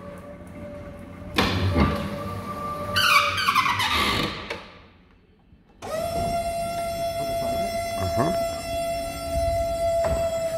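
Stöcklin EFI electric stacker forklift at work: a steady motor whine, then a stretch of noise about a second and a half in and a falling whine a little later, dying away briefly. About six seconds in, a steady high whine starts suddenly as the hydraulic lift raises the forks.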